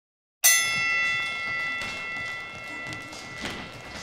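A boxing ring bell struck once about half a second in, with a bright metallic ring that slowly fades away. A few soft thuds come in under it toward the end.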